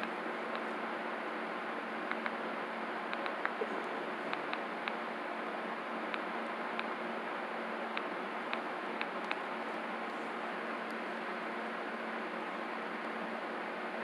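Steady room hiss with a faint low hum, broken by a scattered handful of small light clicks and taps, like a hand handling a phone.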